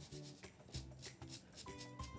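Crisp fried garlic chips rattling as they are shaken in a metal mesh sieve: a light, dry rattle like jingle bells. Faint background music plays underneath.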